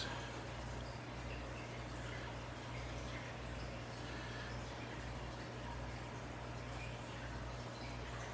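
Aquarium filter running steadily: a constant low hum with faint trickling, dripping water.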